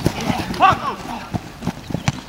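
A player's short shout about two-thirds of a second in, over the irregular thumps of running feet on grass during a flag football play.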